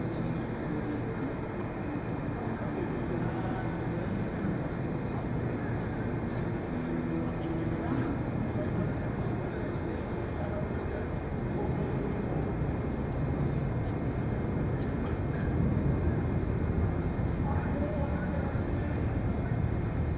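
Steady rumbling room noise of a large indoor hall, with indistinct voices mixed in and a few faint clicks.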